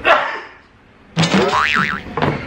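A short sudden sound at the start, then about a second in a wobbling, springy cartoon "boing" sound effect, edited in for comic effect.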